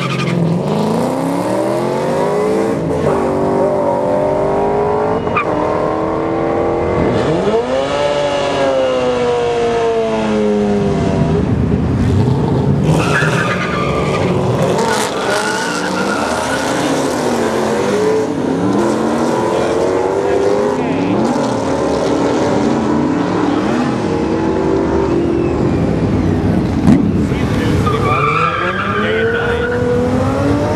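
Ford Mustang V8s accelerating hard down a drag strip, the engine pitch climbing and then dropping sharply at each gear change, over and over as the runs follow one another.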